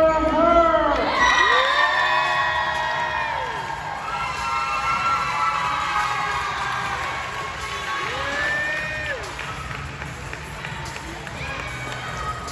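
Crowd cheering and clapping, with two long rising-and-falling whooping shouts, one starting about a second in and another near eight seconds.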